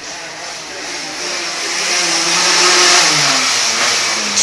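A pocket bike's small engine running, getting steadily louder as it approaches.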